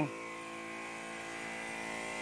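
Battery-powered knapsack sprayer's electric pump humming steadily, with a faint hiss of spray from the lance.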